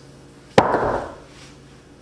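A 45-lb Rogue fleck rubber bumper plate set down flat onto rubber gym flooring: one sharp impact about half a second in, dying away quickly.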